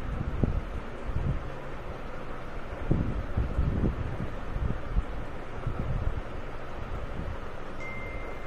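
Steady background noise with irregular low rumbling gusts, like wind buffeting a microphone.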